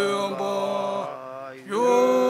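Three Tibetan Buddhist monks chanting a prayer in unison, male voices holding long steady notes. The held note fades out a little past halfway, and a new phrase begins near the end with a fresh held note.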